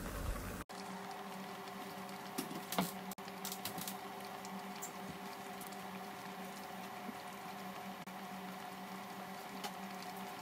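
Mushroom soup at a boil in a pot: steady fine bubbling and popping, with a low steady hum underneath. The soup is in its ten minutes of cooking after the water and stock cube went in.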